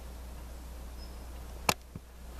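A steady low electrical hum with faint hiss, broken near the end by one sharp click and, a moment later, a fainter lower knock.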